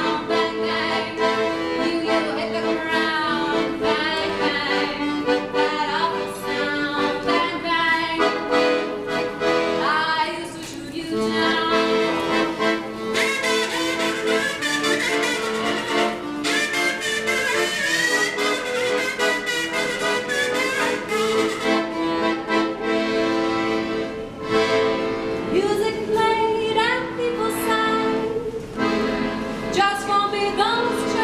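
Piano accordion playing a tune with held chords, with a woman's voice singing along at times.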